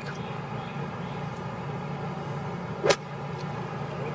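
A golf iron hitting the ball out of thick rough: one sharp strike of the club about three seconds in, over a steady low background noise.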